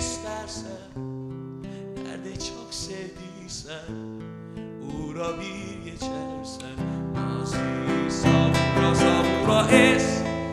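Acoustic guitar strummed and picked in an instrumental passage of a slow song, getting louder over the last few seconds.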